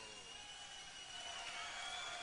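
Steady arena crowd noise with a thin, high, steady tone running over it. The ring announcer's long drawn-out call of the name fades out at the start.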